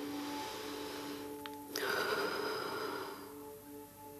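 A person breathing out audibly and at length, with a stronger, sigh-like exhale starting just before the two-second mark that is the loudest sound, over soft ambient music of sustained tones.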